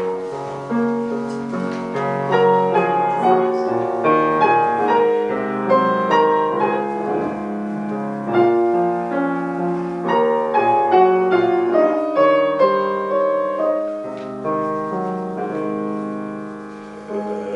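Grand piano playing the introduction to a Korean art song: a flowing line of notes over held chords that swells and eases, tapering off near the end as the voice is about to enter.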